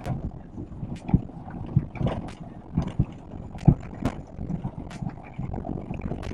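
Inside a car's cabin driving slowly on a rough sandy dirt track: a steady low rumble of engine and tyres, with irregular knocks and thumps as the car jolts over the uneven ground.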